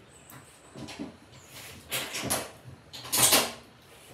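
A railway token instrument worked by hand as the single-line token is put back into it, giving two sliding mechanical clunks, the louder one a little after three seconds in. Returning the token to the machine proves the section clear.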